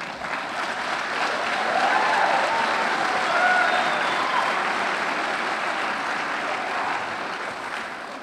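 Audience applauding, swelling over the first couple of seconds and easing off toward the end, with a few cheers mixed in.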